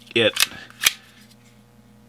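Two sharp clicks from the action of a KelTec P17 .22 pistol worked by hand, about half a second apart.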